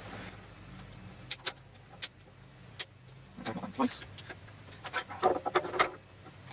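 Metal parts of a belt grinder's tool arm being handled and fitted together: a few sharp, separate clicks and clinks, then quicker runs of clicking near the end as a plate is slotted into the arm.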